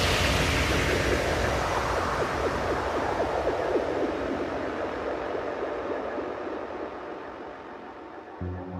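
White-noise sweep effect in a trance mix: a wash of hiss that fades slowly, its high end darkening as it dies away, with faint flickering synth tones in it.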